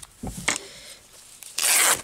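Cotton fabric pieces rubbing and rustling against paper as they are handled on a journal page: a soft thump about a quarter second in, then a loud rasping rub lasting about half a second near the end.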